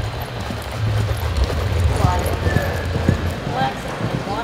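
Hoofbeats of a horse loping on soft dirt arena footing: dull, irregular thumps over a low steady rumble that stops about three seconds in.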